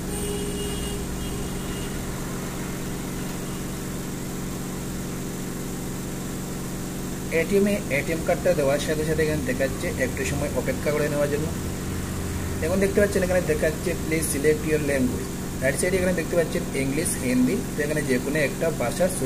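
Steady machine hum, with a person's voice talking over it from about seven seconds in.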